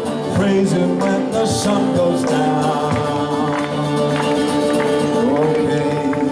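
Acoustic guitar strummed steadily under singing voices, with several long held notes.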